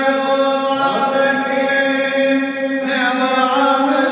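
Male voice chanting a Coptic Orthodox hymn in long, slowly changing held notes, sung in a stone underground cistern whose echo carries the tones on.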